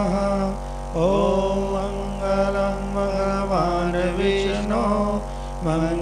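Devotional chant: a voice singing a gliding melodic line over a steady sustained drone, with short breaks between phrases.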